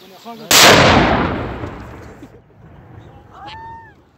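A single loud explosion about half a second in, a shell blowing up close by, its rumble dying away over about two seconds. Near the end comes a short high call that rises and falls.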